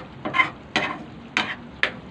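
Metal spoon stirring coconut-milk stew in an aluminium pan, four short scraping strokes about half a second apart.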